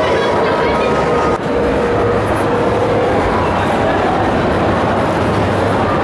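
Ghost-train car running along its track, a steady dense noise, with people's voices mixed in.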